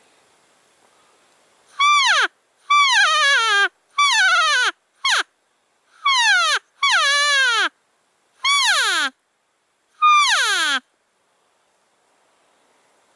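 Hand-held cow elk call blown by a hunter: eight loud cow mews in quick succession, each a short nasal call that slides down in pitch, some brief, some close to a second long.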